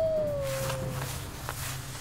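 Wolf howl: one long call that holds its pitch, then slides slowly downward and dies away about a second in. Two faint taps follow.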